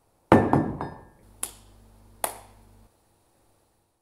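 Three quick knocks in a row, then a faint low hum that starts about a second in, with two sharp clicks over it, and cuts off a little before three seconds in.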